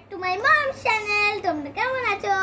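A young girl's voice singing a few drawn-out notes, the pitch gliding up and down between them.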